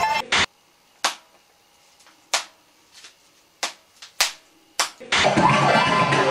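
About eight sharp, separate clicks or slaps at uneven intervals with near-quiet between them. Electronic music cuts off just before them, and music starts again near the end.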